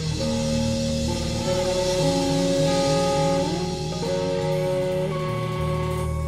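Live blues-rock trio playing: an electric guitar plays long, sustained lead notes, some bent in pitch, over bass guitar and a drum kit.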